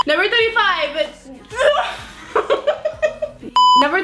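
A girl talking and chuckling, with a short, steady electronic bleep tone near the end.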